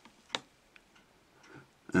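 A few faint, irregular clicks, the clearest about a third of a second in.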